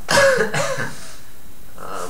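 A man clearing his throat with a short, harsh cough lasting under a second near the start.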